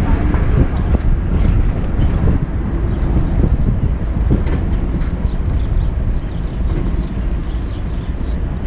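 Kymco Xciting 250 maxi-scooter's single-cylinder engine running at low speed in traffic, mixed with a steady low rumble of wind on the helmet microphone. A bus running close alongside adds to the rumble.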